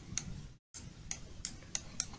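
About five faint, sharp clicks at irregular intervals, made by a pointing device while a formula is handwritten on screen stroke by stroke.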